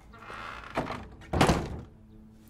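Wooden lattice double doors being swung shut: a brief scraping slide, a light knock, then a loud wooden thunk about a second and a half in as the two leaves meet.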